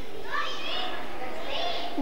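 Children in an audience calling out answers, faint and far from the microphone, over a steady background hubbub of the crowd.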